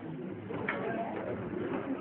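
Low, indistinct murmur of many voices in a hall, with no single clear word.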